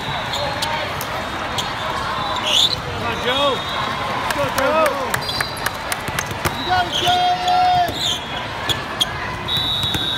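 Busy volleyball hall: balls bouncing and being struck on the surrounding courts as many sharp knocks, with sneakers squeaking briefly on the court floor and voices chattering, all echoing in a large hall.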